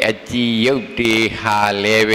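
Only speech: an elderly man talking through a handheld microphone, with drawn-out, evenly pitched syllables.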